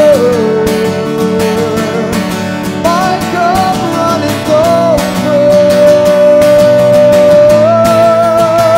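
A man singing a slow worship song while strumming an acoustic guitar, holding one long note through the second half.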